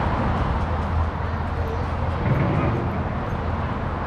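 Steady outdoor background noise: a constant low rumble under an even hiss, with faint voices in the background.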